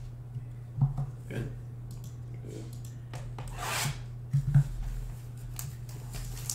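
Hands handling a cardboard trading-card box on a table: a few short knocks and a longer rubbing scrape about three and a half seconds in, over a steady low hum.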